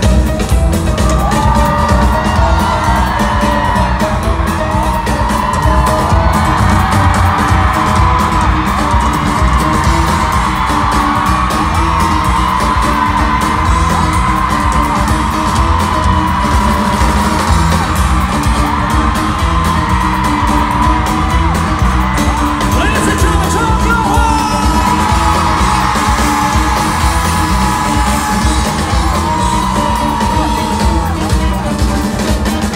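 Live pop-rock band and male lead vocalist performing in a large hall, recorded from among the audience, with fans yelling and whooping over the music.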